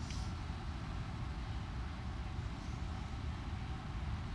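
A steady low rumble with faint hiss under it, and a brief soft rustle right at the start.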